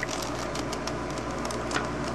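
A plastic V-Cube 5x5 puzzle cube having its top layer turned by hand: light clicking and rattling of the pieces over a steady background hiss.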